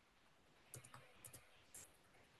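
Faint clicking at a computer: about half a dozen short clicks, some in quick pairs, from a little under a second in until near the end, over otherwise near-silent room tone.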